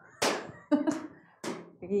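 Hands batting a homemade peteca back and forth: three sharp slaps, about half a second to a second apart.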